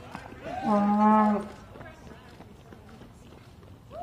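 A spectator's loud, held cheering shout, about a second long, starting about half a second in.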